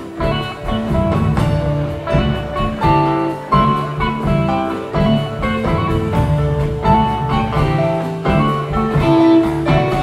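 Live rock band playing an instrumental passage: electric guitars, electric bass, keyboards and drums.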